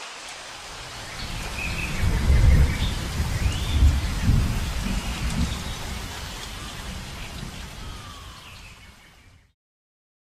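Rain with rumbles of thunder, the thunder loudest between about two and six seconds in, with a few short high chirps over it. It starts abruptly, fades away and stops shortly before the end.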